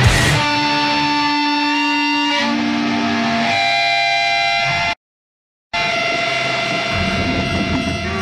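Heavy music: distorted electric guitar rings out in held, sustained chords that shift pitch twice, then stop dead about five seconds in. After under a second of total silence, a new grindcore/sludge track opens with a held guitar tone, and a heavy low end comes in near the end.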